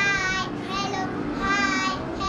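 Young children's voices singing an action song together in long held notes, two of them about half a second each at the start and near the end.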